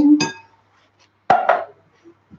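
Two quick knocks with a brief ring, about a second and a half in: a metal tin and spatula knocking against a glass mixing bowl while tinned pineapple is emptied into it.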